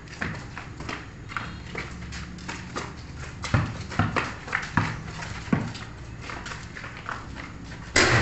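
A basketball bouncing on a concrete court, with a few heavy bounces in the middle and the slap of flip-flops and feet scuffing on the concrete. Right at the end there is a louder bang as a shot hits the backboard.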